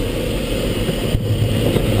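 Steady rush of airflow over the canopy of a Mini Nimbus sailplane in gliding flight, heard from inside the cockpit.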